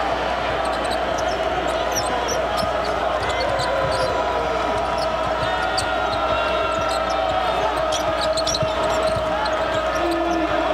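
Steady arena crowd noise during live basketball play, with the ball being dribbled on the hardwood court and many short, high sneaker squeaks.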